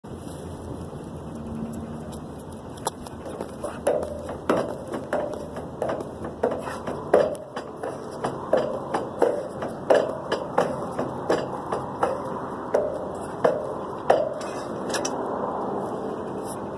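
Sharp impacts from a person doing a jumping exercise on a rubber track, repeating about twice a second, each followed by a brief ringing note. They start about three seconds in and stop about two seconds before the end.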